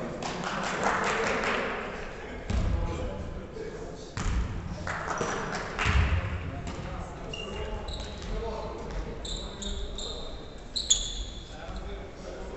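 Basketball bouncing with heavy thuds on a wooden gym floor, three times about two seconds apart, amid players' voices echoing in the hall. Short, high sneaker squeaks on the floor come in the second half.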